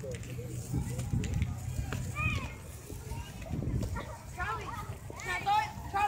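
Distant voices of children and adults calling out in short, scattered shouts over a low steady rumble.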